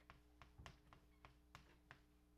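Chalk tapping on a blackboard as a formula is written: about six faint, irregular ticks over a low room hum.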